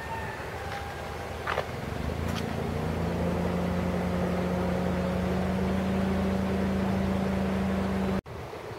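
A motor vehicle's engine hum sets in about two seconds in and holds steady over a rushing background noise, with a sharp click shortly before it starts.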